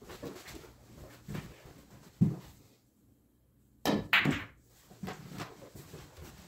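Short knocks and clicks of play on a pool table: balls striking and rolling, with the loudest a sharp knock about two seconds in and a quick pair of sharp clacks about four seconds in.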